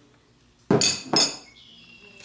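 A spoon scraping and clinking against a dish of overnight oats: two sharp clinks with a brief ring, about half a second apart.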